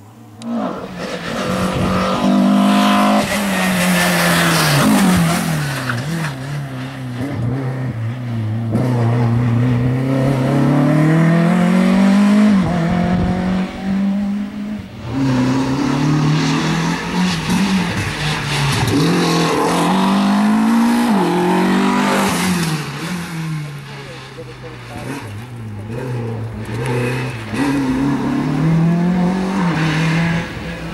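Renault Clio RS Cup's four-cylinder engine revving hard and dropping back again and again as the car accelerates and brakes between slalom cones. The engine note breaks off about halfway through and starts again on another run.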